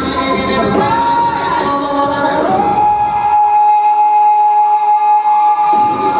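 Live a cappella vocal group singing with a vocal bass and beat. About two and a half seconds in, a lead voice slides up to a high note and holds it. The low bass and beat drop out under the held note for a couple of seconds, then come back just before the end.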